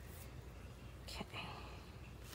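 Quiet room with faint rustling of magazine paper cutouts being pressed and shifted by hand on a journal page.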